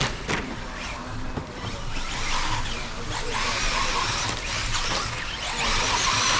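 Electric RC short-course trucks running on the dirt track: a high motor whine with tyre and dirt hiss, louder from about three seconds in and again near the end as a truck passes close.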